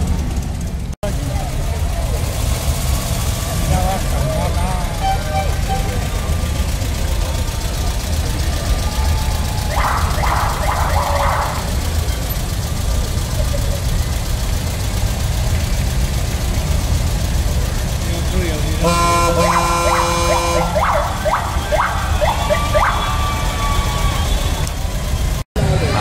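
Vintage Volkswagen Beetles driving past in a street parade, with a steady low rumble of engines and traffic. A car horn sounds for about a second around nineteen seconds in, and voices of onlookers can be heard.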